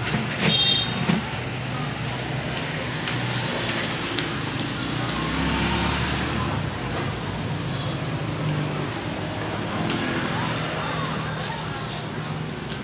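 Steady street traffic noise, with a deeper rumble from a passing motor vehicle swelling around the middle. A brief loud scrape with a squeak comes about half a second in.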